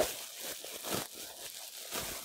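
Plastic bubble wrap crinkling and rustling as it is pulled apart by hand to unwrap a packed item, a run of irregular soft crackles.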